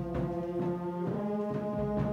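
Middle-school concert band playing held, brass-heavy chords, the chord changing about a second in.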